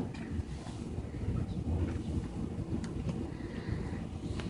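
Low, uneven rumbling room noise with a few faint clicks and knocks, like microphone handling, in a lull between speakers.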